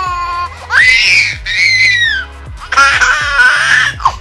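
Baby squealing with laughter in two long high-pitched shrieks, one about a second in and one near the end, over background music with a steady bass.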